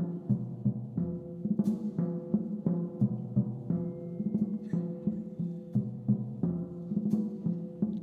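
Swing jazz intro played on upright bass and drum kit: the bass plucks a steady walking line of low notes while the drums keep time, with a few cymbal strikes.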